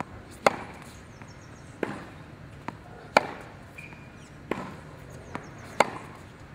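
Tennis racket strings striking the ball on forehand groundstrokes, a sharp pop about every second and a half, five times, with a couple of fainter ticks from the ball in between.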